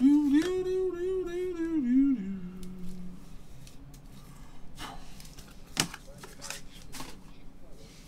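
A man's voice sings a short wordless phrase of a few held notes for about three seconds, dropping lower at the end. Then come several sharp clicks and light rustles as gloved hands handle trading cards and their plastic holders.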